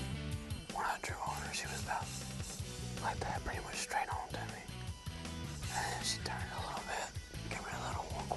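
Hushed whispering between two people over background music with a steady bass line.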